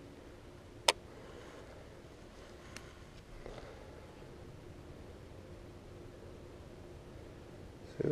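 A quiet outdoor background broken by one sharp click about a second in and a fainter tick near three seconds, from a baitcasting rod and reel being handled while a jig is worked along the bottom.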